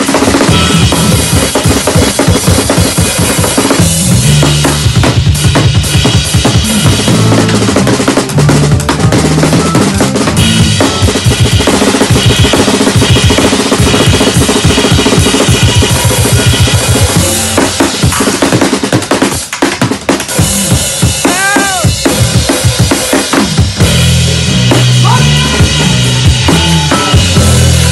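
A drum kit played live in dense, busy patterns of snare, bass drum and cymbals, with an upright bass walking through low notes underneath.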